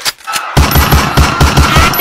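Machine-gun sound effect: rapid automatic fire starting about half a second in, at roughly seven shots a second.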